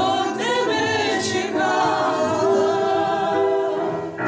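Several women singing a Ukrainian folk song together in harmony, with sustained notes and vibrato, accompanied by a digital piano and an acoustic guitar.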